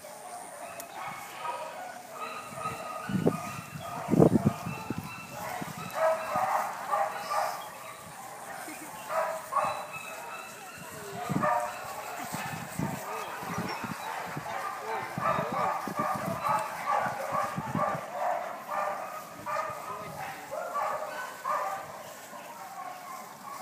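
A pack of dogs barking and yipping over and over, with a couple of dull thumps about three to four seconds in.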